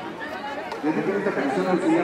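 Indistinct chatter of people talking in a street crowd, the voices clearer from about a second in.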